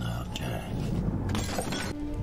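Film soundtrack: a man's voice speaks briefly, then a short noisy burst follows about a second and a half in.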